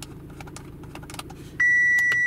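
Light clicks from handling a diagnostic cable connector over a steady low hum, then, about a second and a half in, a loud electronic beep that starts abruptly and holds one steady pitch.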